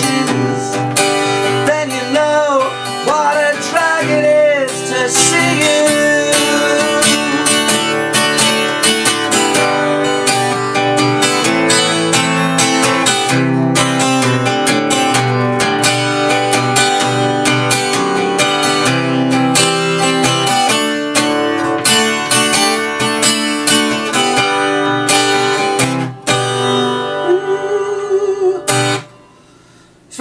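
Acoustic guitar strummed in chords, carrying an instrumental close to the song, with a wavering melodic line over the first few seconds. The playing stops about a second before the end.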